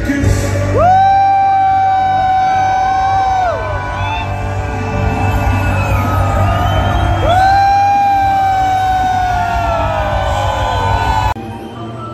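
Live music played loud over a stadium PA, with two long held notes that scoop up into a steady pitch, about a second in and again around seven seconds, the second one sliding down at its end. The music drops away abruptly just before the end.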